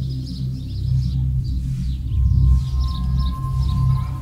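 Ambient film-score music: a low sustained drone, joined about three seconds in by a thin steady higher tone.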